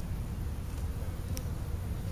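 A steady low buzzing drone, with a brief faint high click about one and a half seconds in.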